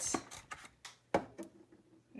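An eggshell clicking and knocking on a stone countertop as an egg is taken from a cardboard carton and spun, a few sharp ticks with the loudest a little over a second in.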